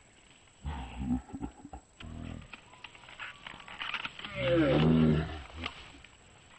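A few heavy thuds on the ground, then a short groan and a long, loud yell from a man.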